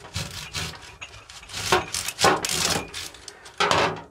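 Serrated knife sawing through the root end of an onion in several back-and-forth rasping strokes, cutting through the papery skin and the basal plate.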